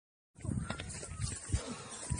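A moment of dead silence at an edit, then a handheld phone microphone picking up rustle and uneven knocks, the largest about one and a half seconds in, with faint, distant high wavering cries.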